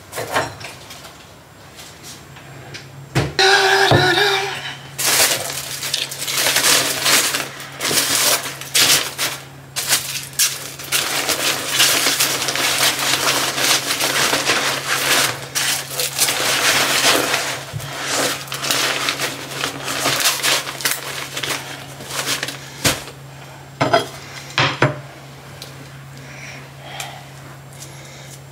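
Crinkling and rustling of foil-wrapped food and packaging being packed into a fabric lunch bag, with small knocks of items set down on the counter. A low steady hum runs underneath.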